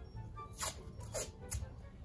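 Tape being pulled off a roll in a few short, screechy rips, over faint background music.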